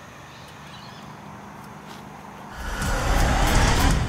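A low steady hum, then about two and a half seconds in a loud, deep rumbling whoosh swells up and holds near its peak to the end.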